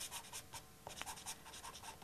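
A pastel stick scratching on paper in quick, short, faint strokes, laying green colour into a tree's foliage.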